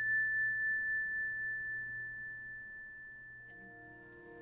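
A logo chime: one struck, bell-like high tone ringing on and slowly dying away. Faint piano notes begin near the end.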